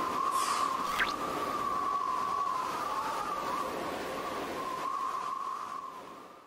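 End-screen sound design: a steady held tone, a falling whoosh just after the start and a short rising zip about a second in as the graphics appear, then fading out near the end.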